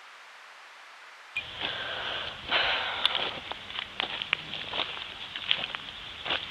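Faint steady hiss for about the first second and a half, then crackling and rustling of footsteps through dry leaf litter, many small sharp clicks over a steady hiss.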